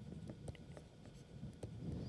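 Faint taps and scratches of a stylus writing on a pen tablet, a few short clicks as letters are formed.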